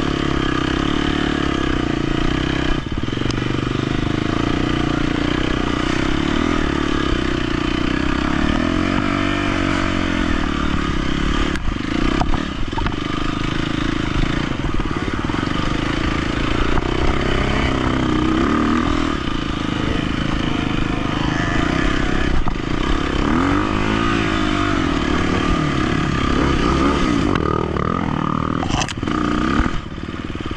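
KTM 250 XC-F single-cylinder four-stroke dirt bike engine running under load on a trail ride, the revs rising and falling as the throttle is worked. A few sharp knocks from the bike striking the ground.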